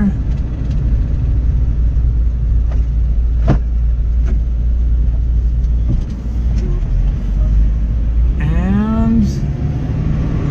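Steady low engine and road rumble of a small Tracker SUV driving slowly, heard from inside the cabin. A single sharp click comes about three and a half seconds in.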